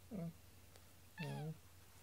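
A domestic cat gives one short meow about a second into the clip while its claws are being clipped.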